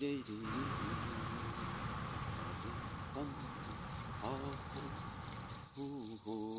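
A long, steady breath blown out, lasting about five seconds and stopping shortly before the end. It is the slow exhale phase of a paced breathing count: in for four, hold for six, out for eight.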